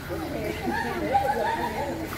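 Overlapping chatter of several children's voices, with no clear words.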